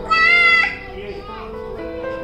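Background music with a child's high-pitched voice, one short call lasting about half a second near the start.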